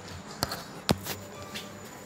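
Two sharp knocks about half a second apart, the second louder, then a few fainter taps.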